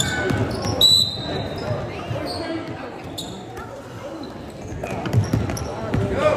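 Basketball dribbled on a hardwood gym floor in a run of repeated bounces, echoing in the hall, with voices calling out around the court and a couple of short high squeaks.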